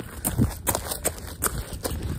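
Running footsteps on a dirt trail in minimal trail shoes, a steady rhythm of soft footfalls about two or three a second, over a low rumble of wind and handling on a handheld phone's microphone.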